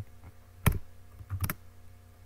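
Computer keyboard keystrokes: one sharp key press, the loudest sound, well before the middle, then a quick pair of clicks just after the middle, over a faint steady hum.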